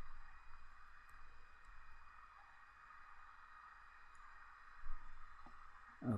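Quiet room tone: a steady hiss and low hum from the recording, with a faint click at the start and another just before the end.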